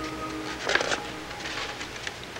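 Torn, crumpled sheet-music paper rustling and crinkling as it is handled, with a louder cluster of crackles just under a second in.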